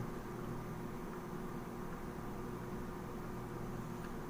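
Steady room noise: an even hiss with a low hum and a faint steady tone, without any distinct clicks.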